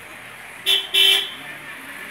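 A vehicle horn sounding two short beeps about a second in, the second a little longer than the first.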